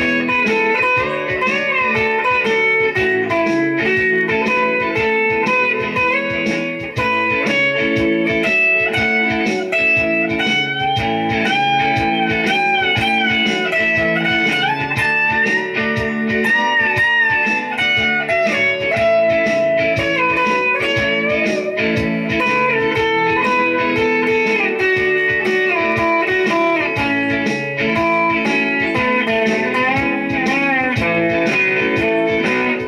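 Solo electric guitar, a Stratocaster-style instrument, played through an amp in a continuous picked and strummed instrumental passage with no singing. Some notes are bent or wavered in the middle stretch.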